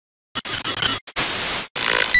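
Loud TV-static glitch sound effect, hissing white noise. It starts after a short silence and twice cuts out for a moment, so it comes in three stretches.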